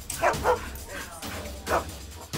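Pit bull barking reactively at a person walking past outside a window, in three short, loud barks: two close together near the start and one near the end.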